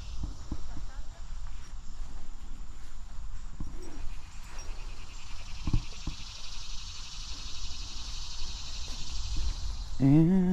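A steady, high-pitched insect chorus with a fine rapid pulse, growing louder about halfway through, over a low rumble and a few faint knocks.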